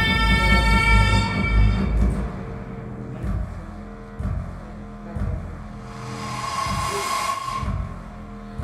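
Music: a held, whistle-like high tone over a deep rumble fades out about two seconds in. It leaves a quieter, sparse stretch broken by a few low thuds, with a soft tone swelling near the end.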